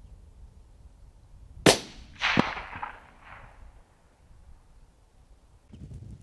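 A single rifle shot about a second and a half in, a sharp crack, followed about half a second later by a longer, fading rumble.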